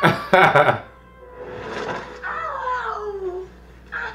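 A woman's high cry from the show's soundtrack, sliding down in pitch, over faint background music, after a loud voiced outburst with sharp clicks in the first second.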